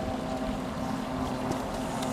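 Wind buffeting the camera's microphone on an open mountainside, an uneven low rumble that rises and falls in gusts.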